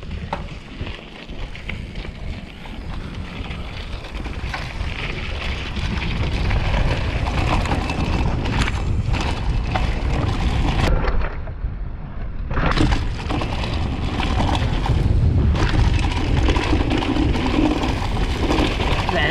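Downhill mountain bike descending dry dirt and rock: the tyres roll and rattle over the ground and wind buffets the camera microphone, growing louder as the bike gathers speed. A little after eleven seconds the hiss briefly dies away for about a second, then returns.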